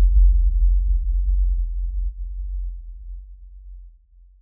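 A deep electronic bass tone held at the close of a dance track, fading gradually toward silence.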